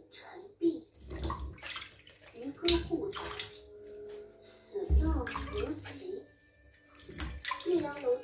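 Oranges being rubbed and washed by hand in a stainless steel pot of water, with water splashing and dripping back into the pot in repeated bursts.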